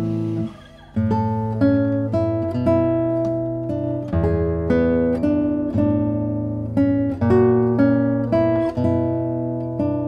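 Andrea Tacchi nylon-string classical guitar played fingerstyle: plucked melody notes over bass and chords at an even pace, with a brief break about half a second in before the playing resumes.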